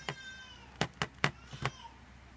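Keys of a Casio fx-991ES Plus scientific calculator being pressed, about five quick clicks in the second half as a number is typed in. At the start there is a short high-pitched call that falls slightly.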